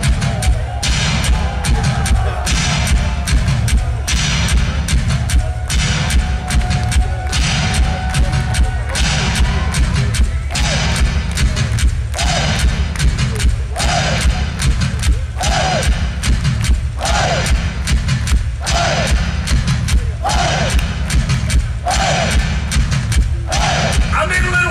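Live three-piece rock band playing an instrumental boogie shuffle: electric guitar, bass and drums over a heavy, steady beat. From about halfway a short bending guitar figure repeats roughly once a second.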